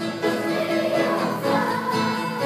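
A children's choir singing a song with guitar accompaniment.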